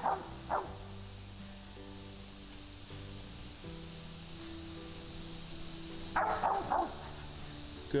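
Mountain cur barking treed at the foot of a snag, a couple of barks at the start and a quick run of barks about six seconds in, the sign that it has game treed. Background music with slow held chords plays under it.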